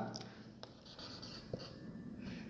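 Faint scratching of a marker writing on a whiteboard in short strokes, with a couple of small ticks.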